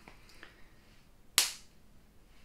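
A single sharp pop from the plastic cap of a lip balm stick, about one and a half seconds in, with a fainter click about half a second in.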